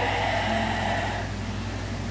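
A steady low hum with faint hiss, without words: background noise of the recording between spoken cues.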